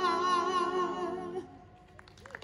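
Five-woman a cappella group holding the final chord of a song with vibrato; the chord cuts off about one and a half seconds in.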